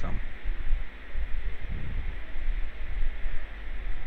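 Steady low background rumble and hiss, with no clear voice.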